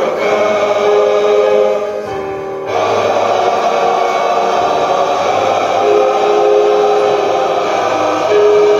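Large male choir singing held chords. The sound thins briefly about two seconds in, then the full choir comes back in.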